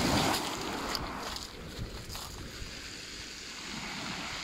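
Small waves washing in over a pebble shingle beach at the water's edge, louder in the first second or so, then settling to a steady lower wash.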